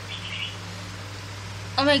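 Steady low hum under quiet room tone, with a faint, brief high chirp about a quarter second in; a boy's voice starts near the end.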